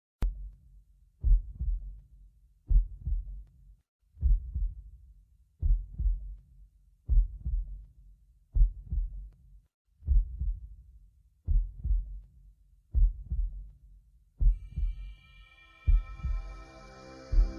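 A deep double thump repeats evenly about every one and a half seconds, like a slow heartbeat. Near the end a sustained chord of music swells in.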